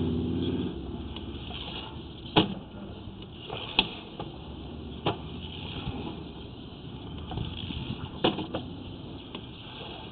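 Steady low rumble with a few sharp clicks or knocks scattered through it, the loudest about two and a half and four seconds in.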